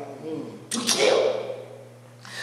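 A man's voice through a microphone: a short spoken fragment about two-thirds of a second in, between pauses, with a steady low hum underneath.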